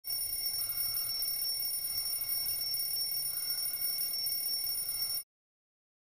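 Smartphone alarm ringing as a steady high-pitched tone, cutting off suddenly about five seconds in.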